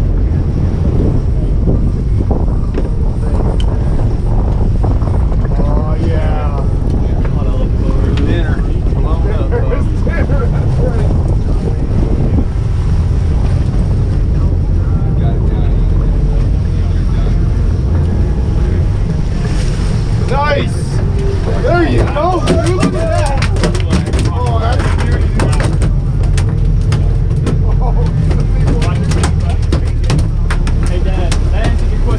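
Steady low rumble of the sportfishing boat's engines and wind on the microphone. Voices call out now and then over it, loudest about two-thirds of the way through.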